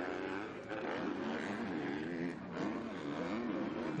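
Motocross bike engines revving up and down as riders race over the track, their pitch rising and falling repeatedly.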